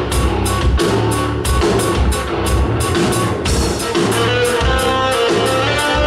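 Live instrumental progressive rock. A touch guitar plays the bass line and a Chapman Stick plays the melody over drums, with an even pulse of cymbal strokes about three a second.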